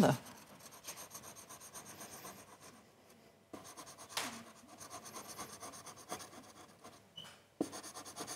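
A plastic scraper faintly scratching the coating off a Triss lottery scratch card in irregular rubbing strokes, pausing briefly about three seconds in.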